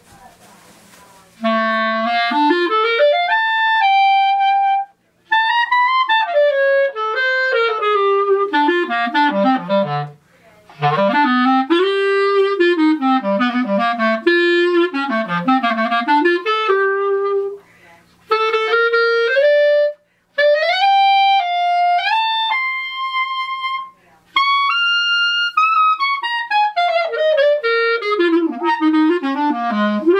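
Artley B-flat clarinet played solo in phrases of fast scales and runs, sweeping from the low register up into the high register and back, with short breaths between phrases. A quick rising run opens about a second and a half in, and a long falling run comes near the end.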